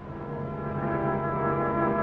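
A steady, low droning tone that swells in and holds one pitch.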